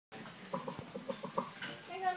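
A person laughing in a quick run of short, evenly spaced bursts, followed by a brief higher voice sound near the end.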